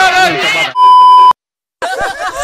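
A voice, then a loud steady electronic beep lasting about half a second. It cuts off abruptly into a brief dead silence before other voices start.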